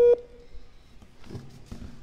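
A short electronic telephone beep, the second of a pair of call tones, cut off right at the start, followed by faint room sound.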